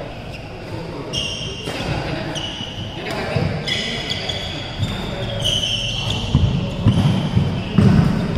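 A badminton doubles rally on an indoor court: court shoes squeak briefly several times as players move, and rackets smack the shuttlecock. Heavier thuds of footfalls and lunges come near the end.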